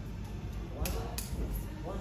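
Indistinct voices in a training hall, with two sharp smacks about a second in, a third of a second apart.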